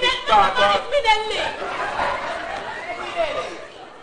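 Several people talking over one another, the voices thinning out toward the end.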